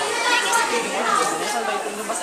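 A group of young people chattering and talking over one another, several voices at once with no single voice standing out.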